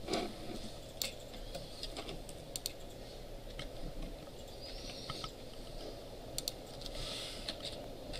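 Computer keyboard typing: scattered, irregular keystrokes with short pauses between them, over a steady low hum of room noise.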